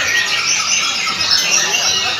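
Many caged songbirds singing at once: a dense, continuous tangle of quick chirps and whistled glides overlapping each other.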